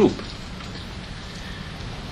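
Steady background hiss in a pause in a man's speech, just after his last word ends.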